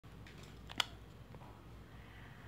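Faint handling of a retractable tape measure being laid out on crocheted fabric, with one short sharp click a little under a second in and a softer tick a moment later.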